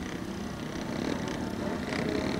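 Speedway motorcycle engines running in the background at the start, a steady low hum.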